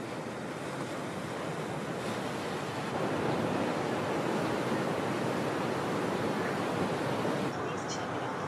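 Ocean surf breaking: a steady wash of crashing waves and whitewater that grows louder about three seconds in and eases slightly just before the end.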